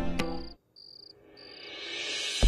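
Plucked-string background music stops about half a second in. Then come three short trills of cricket chirping, an effect for a night scene, and a rising whoosh swells near the end.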